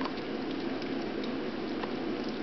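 Four three-week-old puppies lapping and chewing at a dish of soft, wet food: a steady wet slurping with small scattered clicks.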